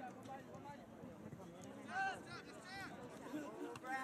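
Faint, distant shouts and calls from players and sideline spectators at a soccer game, with one clearer call about two seconds in.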